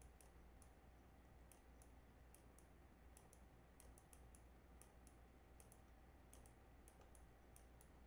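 Near silence with faint, irregular clicks of a computer mouse, a few each second, as handwriting is drawn stroke by stroke on screen, over a faint low hum.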